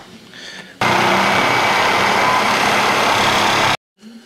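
Power tool cutting a groove into the worn steel-backed bushing inside a C4 transmission's tail shaft extension housing: a loud, steady grinding noise that starts about a second in and cuts off abruptly just before the end.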